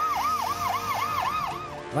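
Ambulance siren in a fast yelp, its pitch sweeping up and down about four times a second, dying away just before the end.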